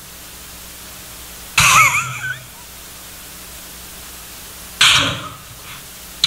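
Quiet hall room tone broken twice by a short, cough-like vocal burst, about a second and a half in and again near five seconds.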